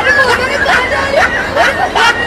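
A person's voice making short rising vocal sounds, several in quick succession, over background chatter.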